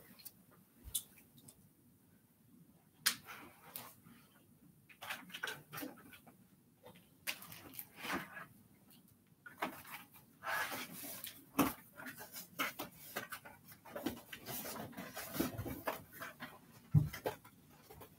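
Scattered knocks, clicks and rustling of objects and packaging being handled and moved about, irregular, with a few sharper knocks.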